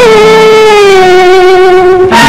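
1960s Tamil film song music: one long held note that sinks slightly in pitch over two seconds.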